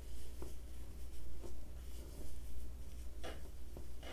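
Faint rustling and light scratching of yarn drawn through and over a metal crochet hook while double crochet stitches are worked, with a few small ticks.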